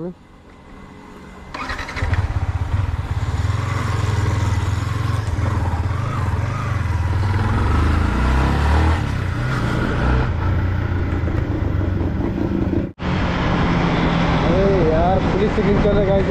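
Yamaha MT-15's single-cylinder motorcycle engine pulling away about a second and a half in and running on under way through the gears, with wind noise on the rider's microphone. The sound cuts out abruptly for a moment about three-quarters of the way through.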